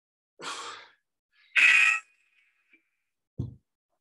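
A man blowing out hard, forceful breaths under exertion during a kettlebell workout: two exhalations, the second louder and sharper. A short dull thud on the floor comes about three and a half seconds in.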